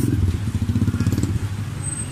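Street traffic close by: a motor vehicle engine running with a low, rapidly pulsing rumble.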